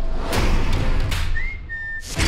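Trailer sound design: deep booming hits, then a high whistle near the end that slides up briefly and then holds steady.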